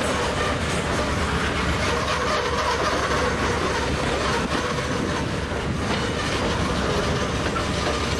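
Freight train of boxcars rolling past close by: a steady, even noise of steel wheels running on the rails.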